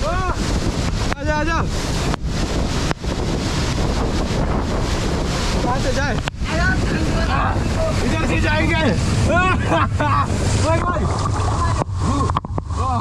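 A waterfall pouring down at close range: a loud, steady rush of falling water, with spray buffeting the microphone.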